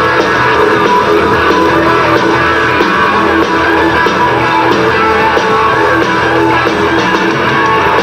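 Hard rock band playing live through an instrumental passage, electric guitar to the fore over bass and drums, with a wavering lead line.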